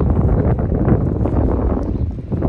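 Wind buffeting a phone's microphone outdoors: a loud, steady, low rumble.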